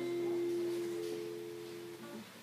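An acoustic guitar's last strummed chord rings on and slowly fades, with one low note holding longest.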